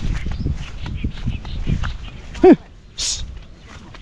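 Footsteps and rustling through grass, then a single short, loud animal call about two and a half seconds in that rises and falls in pitch, followed by a brief hiss.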